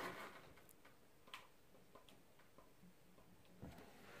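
Dapol N gauge Class 56 model locomotive on a DCC test run after repair, heard only as a few faint, irregular ticks of its wheels over the rail joints against near silence.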